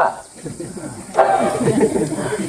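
Speech: a man talking through a handheld megaphone, with a pause of about a second before his voice picks up again.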